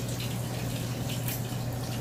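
Water running and trickling into a fish tank from a hose, a steady watery noise with a low steady hum underneath.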